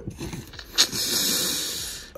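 A long breath of air blown out close to the microphone: an even hiss lasting about a second that fades away near the end.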